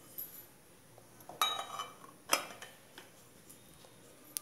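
Two metallic clinks with a short ring, about a second and a half in and again a second later, plus a faint tap or two: a brass sev press (sancha) being handled, its metal parts knocking together.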